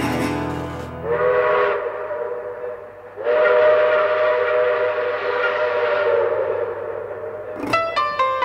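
Train whistle blowing twice: a short blast about a second in, then a long blast held for about four seconds, each a chord of close steady notes over a hiss.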